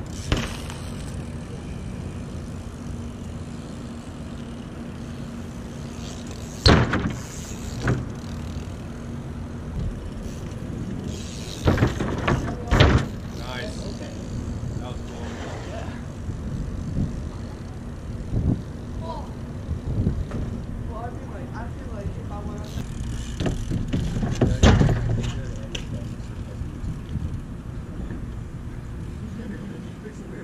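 BMX bikes knocking and clattering on a plywood sheet leaned on wooden pallets and landing on asphalt: sharp impacts right at the start, twice about a quarter of the way in, a close pair near the middle, and a louder cluster past three quarters, over a steady low hum.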